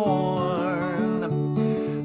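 Acoustic guitar strummed steadily while a man's voice holds a long, wavering sung note for about the first second and a half, then the guitar plays on alone.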